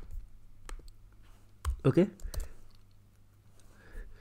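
Several separate sharp clicks from a computer mouse and keyboard, made while copying and pasting lines of code.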